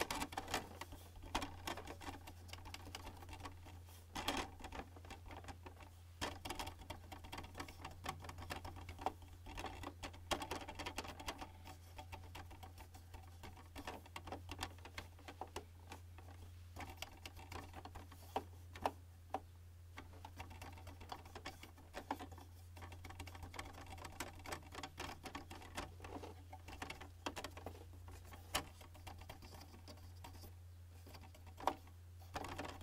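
Hands handling the plastic casing and trays of a Canon all-in-one printer, with many small irregular taps and clicks and a few louder knocks. A steady low hum runs underneath.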